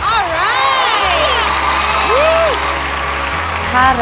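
Studio audience cheering and applauding over music, with a held low bass note through the middle.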